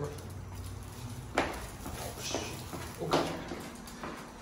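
Footsteps going down a stairwell, with two heavier steps or thumps about 1.4 and 3.1 seconds in.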